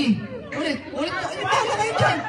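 Chatter: several people talking over one another.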